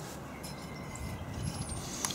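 Faint steady outdoor background noise, with a brief high chirp near the end.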